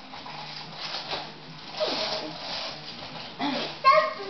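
Rustling and crinkling of wrapping paper as presents are handled and opened, in a few short spells. Near the end there is a brief high-pitched cry, the loudest sound.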